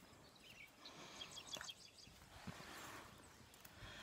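Near silence: faint background with a few faint, short chirps of distant birds.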